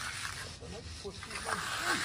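Concrete finishing broom drawn across a freshly poured concrete pool deck, a light scraping hiss that comes and goes with the strokes.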